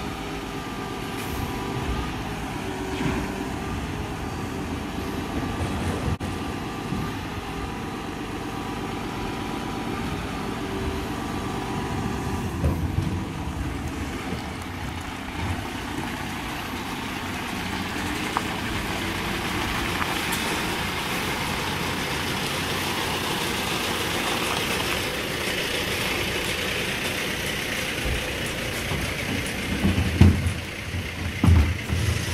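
Mercedes Econic refuse lorry's six-cylinder diesel engine running as the truck creeps forward at walking pace, a steady engine hum at first. In the second half, as it comes alongside, the sound becomes louder and hissier.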